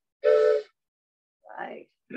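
A toy train whistle blown in one short, steady blast of about half a second, sounding a chord of several close notes, right after a first blast. A brief voice sound follows a little later.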